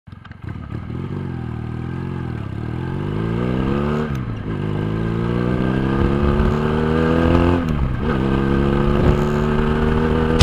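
Regal Raptor Spyder 250 cruiser's V-twin engine pulling under acceleration, its pitch rising steadily and then dropping sharply twice, about four and eight seconds in, as the rider shifts up a gear.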